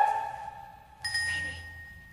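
Opera music dying away, then about a second in a single bell-like note is struck in the orchestra and rings out, fading.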